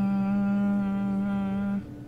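A woman humming a single steady, low note for about two seconds, which cuts off sharply near the end.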